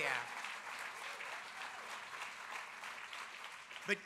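Audience applauding steadily in a large hall.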